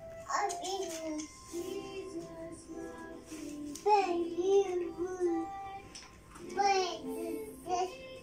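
A toddler singing in short phrases with some held notes, with music playing from a television.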